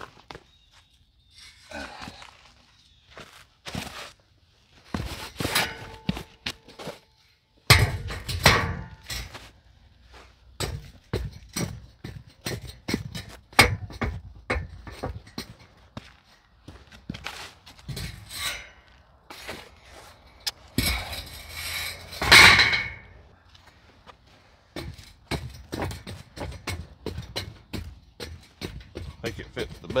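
Irregular knocks and thunks of rocks and a drain grate being worked into place, with two longer, louder scraping passes, one about a quarter of the way in and one about two-thirds through.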